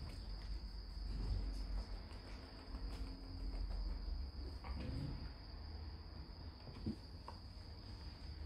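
A steady high-pitched whine runs throughout, with faint shuffling and a few small knocks as puppies move about on a blanket and in a wicker basket.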